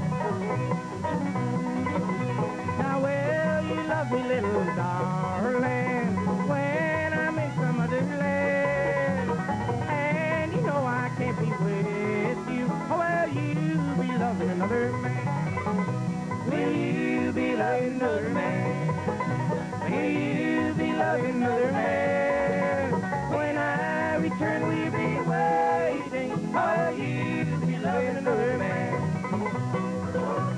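Bluegrass band playing an instrumental opening: fast banjo picking over acoustic guitar rhythm, with mandolin, in a steady driving beat.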